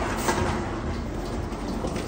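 Metal wire shopping carts loaded with empty plastic bottles rattling and rumbling as they are pushed over pavement, with small clicks from the wheels and wire frame.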